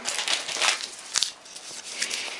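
Rustling and crinkling of small ration packets as a hand rummages in the cardboard box and pulls one out, with a sharp click a little past halfway.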